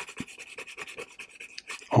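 Soft, dark-grade graphite pencil shading on drawing paper: quick, evenly repeated back-and-forth scratching strokes as an area is filled in black under heavy pressure.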